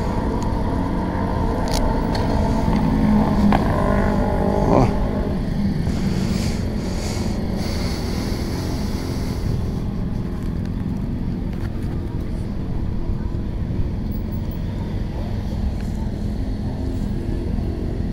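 Motorcycle engine idling steadily, with a brief rev that falls away about five seconds in.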